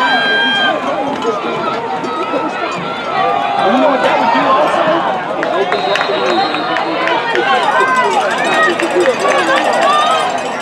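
Football crowd in the stands: many voices talking and shouting over each other, steady all through.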